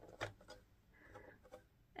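Near silence, with a faint click about a quarter second in and a few softer ticks after it: hands handling a rotary paper trimmer and its pull-out extension arm.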